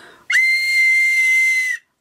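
A small plastic toy whistle blown once in a single steady, breathy, high note lasting about a second and a half, very loud.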